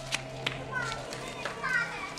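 Children playing in the street, calling out in short high voices, with a few sharp taps. A low steady hum underneath stops about halfway through.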